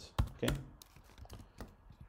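Computer keyboard keystrokes: a handful of separate clicks at an uneven pace while code is typed.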